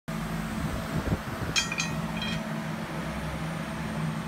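Steady low hum of a running electronic roulette gaming machine, with a couple of knocks just after a second in. Short high electronic tones sound twice, at about one and a half and at about two and a quarter seconds.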